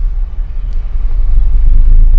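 Low, steady rumble of engine and road noise inside a Suzuki car's cabin as the car is told to speed up. It grows louder about halfway through.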